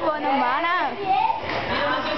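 Excited young voices shouting and calling out over one another, with a high voice that sweeps sharply up and down in pitch about half a second in.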